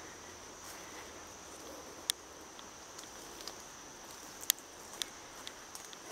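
Footsteps through forest undergrowth, with a few sharp snaps and cracks underfoot, the loudest about two seconds and four and a half seconds in. A steady, high insect drone runs underneath.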